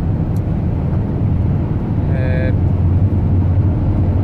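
Steady low rumble of road and engine noise inside the cabin of a moving van.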